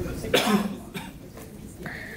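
A person coughs once, sharply, about a third of a second in.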